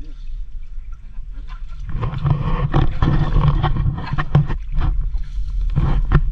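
Muddy water splashing and sloshing as a wire-mesh fish trap is worked up out of a shallow stream, over a steady low rumble; the splashing grows loud about two seconds in and stays busy with short crackling splashes.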